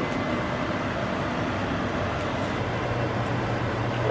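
Steady fan noise, an even whooshing with a low hum underneath, that runs unchanged throughout.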